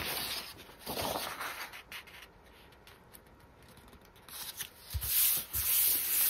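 Paper being handled, opening with a light knock and a rustle. After a quieter stretch, hands rub a sheet of music paper flat onto freshly glued paper, the rubbing growing louder near the end.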